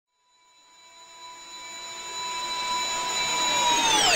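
Logo intro sound effect: a cluster of steady high-pitched tones swelling up from silence and growing louder. Near the end they all begin to dive sharply downward in pitch.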